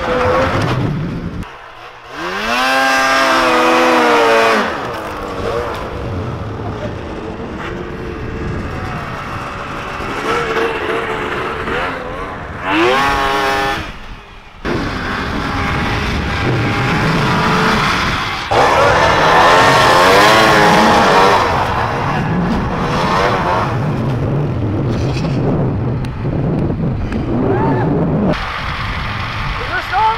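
Snowmobile engines revving and easing off as the sleds are ridden through deep snow, with several sharp rises in pitch, the loudest about two seconds in, near the middle and about two-thirds of the way through.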